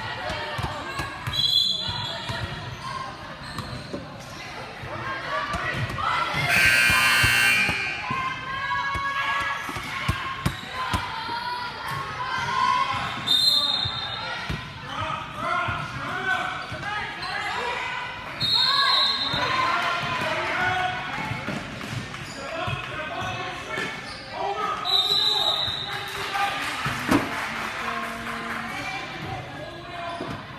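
Basketball dribbling on a hardwood gym floor, with voices of players and spectators echoing in a large gym. Several short high squeaks come through, and there is one loud high-pitched sound about seven seconds in.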